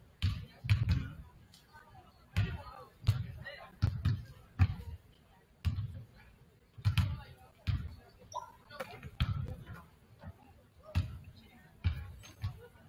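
Basketballs bouncing on a hardwood gym floor as several players dribble and shoot, giving irregular low thumps about one or two a second.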